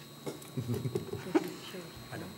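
Indistinct, low talking from several people in a large room, with a short sharp click about two-thirds of the way in.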